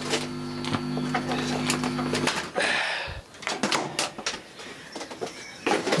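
Steady electrical buzz from the Sony boombox's speaker, cutting off suddenly about two seconds in, followed by clicks and rustling as wires and a plug are handled.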